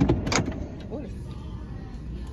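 Steady low rumble of a car cabin, with two sharp clicks or knocks close together at the very start.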